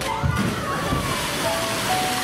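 A polar bear diving into a pool: a heavy splash about a quarter second in, then water rushing and churning. Background music with held notes runs underneath.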